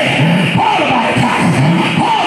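A preacher's amplified voice shouting in a sing-song cadence that rises and falls in long swoops, with loud music behind it.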